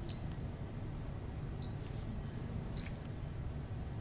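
Faint computer mouse clicks, coming in pairs about every second and a quarter, over a steady low room hum.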